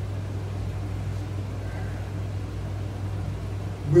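Window air conditioner running with a steady low hum.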